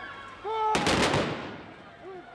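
A ceremonial rifle volley from a military honor guard, fired on command: a single sharp report about three-quarters of a second in, with a short echo trailing off after it.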